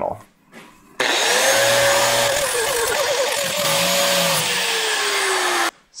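Angle grinder with a flap disc grinding mill scale and rust off steel down to bare metal: a steady hiss of abrasive on metal over the motor's whine. It starts about a second in, the whine wobbles midway and sinks lower near the end, then it cuts off suddenly.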